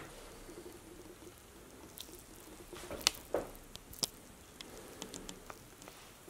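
Faint, scattered clicks and taps from someone moving about a small room with a hand-held camera, a few seconds apart, over a faint steady room hum.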